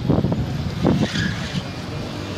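Passing road traffic: a car's engine and tyres as it goes by, a steady rumble with some tyre hiss.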